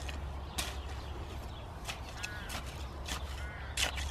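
Hand trowel digging into heavy, stony soil, giving a few short scrapes. A bird calls twice in the background, with a short arched call each time.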